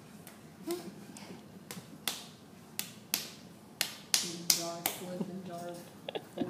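A lump of wet clay patted and slapped between the hands, several sharp smacks at irregular intervals, most of them in the second half.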